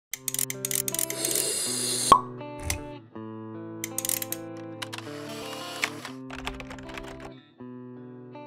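Logo intro music with sound effects: held notes over a low bass, many short pops and clicks, two rushes of hiss, and one sharp hit about two seconds in.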